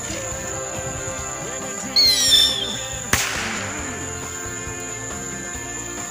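A bottle rocket firework: a short falling whistle about two seconds in, then a single sharp bang about a second later as it bursts, over background music.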